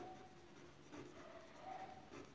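Faint scratching of a ballpoint pen writing on a paper textbook page.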